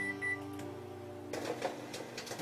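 Microwave oven control panel beeping twice at the start, short high beeps about a quarter second apart, then the oven running with a steady low hum.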